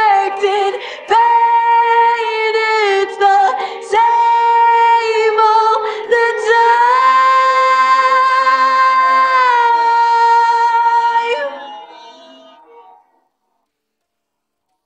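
Isolated female lead vocal with no instruments, singing long held notes with a few short breaks. The pitch steps up about six and a half seconds in, drops back near ten seconds, and the voice fades out about twelve seconds in.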